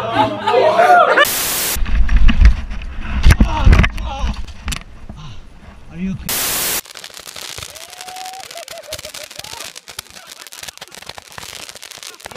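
Two short bursts of static between clips. Between them, heavy low rumble and knocks from a mountain-bike crash on a dirt trail. After the second burst, fireworks crackling with many small pops.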